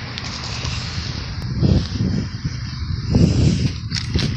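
Footsteps on dry, packed dirt against a steady outdoor hiss: two dull low thumps about a second and a half apart.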